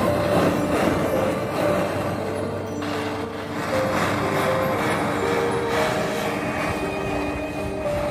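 Jeweller's blowtorch flame rushing steadily as it melts silver in a crucible, the noise swelling and easing every couple of seconds, under a background music melody.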